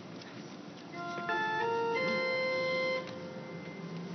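Pipe organ playing a short phrase of three or four sustained chords that step upward in pitch, the last held for about a second before it stops, typical of an organ intonation giving the pitch for a chant.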